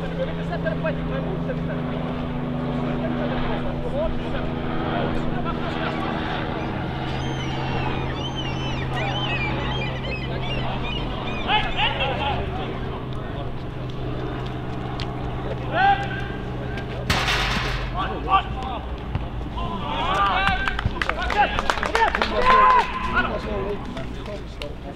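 Players calling and shouting to each other across an outdoor football pitch, loudest in a burst of calls near the end, over a steady low hum. A short rush of noise comes about two-thirds of the way through.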